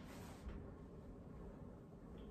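A brief swish of body movement, a slide-up and kick, near the start, then faint room tone.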